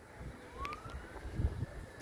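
Faint distant siren wailing, its pitch rising over about a second, over a low outdoor rumble.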